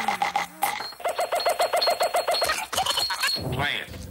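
An alarm-like ringing: a rapidly pulsing tone, about eight pulses a second, starting about a second in and lasting about a second and a half.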